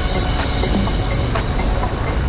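Electronic dance music in a break: the kick drum drops out and a rushing noise swell opens the passage and fades over about a second and a half, over a sustained synth line.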